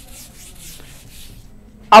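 Felt-tip marker writing on a whiteboard: a faint series of scratchy strokes that stops a little before speech resumes.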